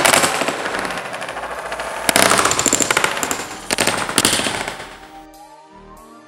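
Wooden carrom coins tipped from a paper cup clattering onto a carrom board: rapid rattling clicks in three loud bursts that die away near the end, when music begins.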